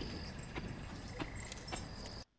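Keys jangling, with a few short, light metal clicks, at the lock of a barred cell door.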